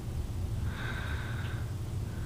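A cat breathing and sniffing right at the microphone, with a faint whistle on each breath over a steady low rumble.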